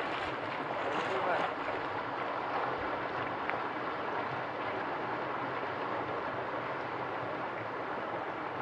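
Steady rushing of flowing stream water close to the microphone.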